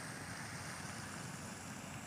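Faint steady rushing noise with no distinct events, the outdoor background by the lake.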